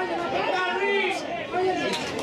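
Several people's voices talking and shouting over one another during football play.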